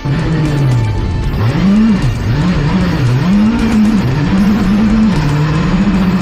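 Skoda Fabia R5 rally car's turbocharged four-cylinder engine heard from inside the cockpit, its revs rising and falling several times in quick succession, then holding high and steady near the end. Music plays underneath.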